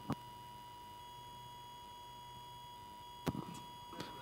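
Faint steady hiss of an open video-call line with a thin steady tone, broken by a short click just after the start and another a little after three seconds in.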